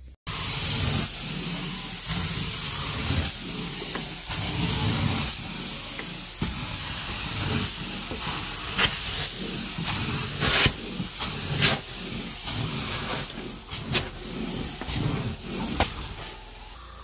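Carpet extraction wand spraying and sucking water as it is drawn across the carpet: a loud steady hiss that surges with each pass, with a few sharp clicks in the second half.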